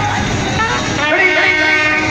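Indian brass band playing in the street: trumpets and saxophone holding sustained notes while a man sings into a corded microphone.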